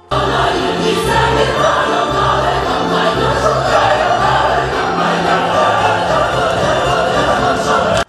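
A choir singing over folk-dance music, loud and full throughout; the music starts and cuts off suddenly.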